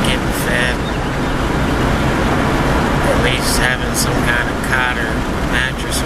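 Steady engine and road noise heard from inside a vehicle's cabin, with a man's voice speaking briefly a few times over it.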